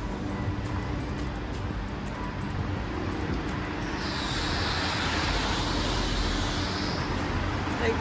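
Urban street traffic: a steady low rumble of road vehicles, with a hiss that swells about four seconds in and fades out about three seconds later, like a vehicle passing.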